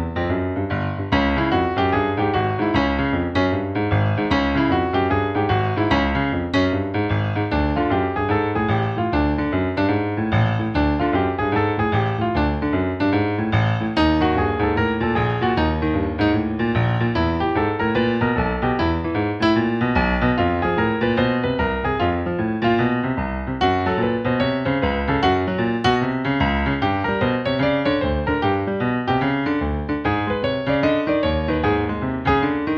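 Digital stage piano playing a swung boogie-woogie left-hand pattern in C, an octave C to C, then the third E walking up in half steps to the fifth G, repeating steadily, with the right hand improvising on a C blues pentascale above it.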